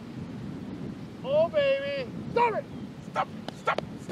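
Drawn-out wordless vocal exclamations from men reacting as a chipped golf ball rolls toward the hole. One long call comes between one and two seconds in, then a short falling one. Near the end comes a quick run of sharp clicks, over a low steady wind-and-surf background.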